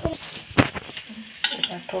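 Food frying in a pan with a metal spoon clinking and scraping against steel. A voice hums over it in the second half.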